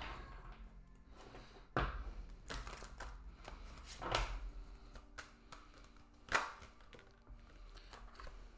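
Tarot cards being shuffled and handled: short riffling and tapping sounds of the deck in several separate bursts, with faint music underneath.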